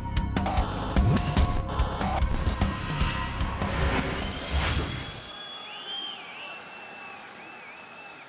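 Short TV show stinger music with a heavy beat and sharp hits, ending about five seconds in. After it, faint stadium crowd background from match footage, with a few whistled notes that rise and fall.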